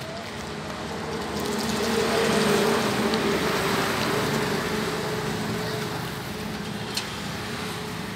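Mahindra 585 DI tractor's four-cylinder diesel engine running steadily. The sound swells louder from about a second in and eases back down over the next few seconds. A single short click comes near the end.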